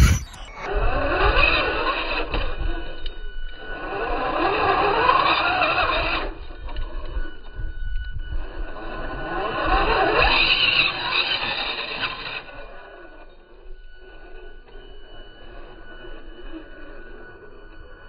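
Slowed-down, deepened sound of an electric RC rock crawler working over rocks: motor and gear whine drawn out with wavering pitch, plus tire scrapes. It comes in louder surges in the first half, then fades.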